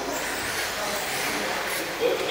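1/10-scale electric RC sprint cars running on an indoor dirt oval: a steady mix of electric motor and tyre noise as the cars go round.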